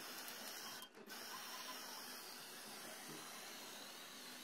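Aerosol spray-paint can hissing as red paint is sprayed onto a metal gas-stove burner stand, with a brief break about a second in.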